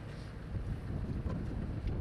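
Wind buffeting the microphone, an irregular low rumble.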